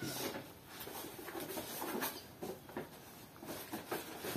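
Faint, scattered rustling and light handling noises from sheets of paper and a small cardboard box being turned over in the hands.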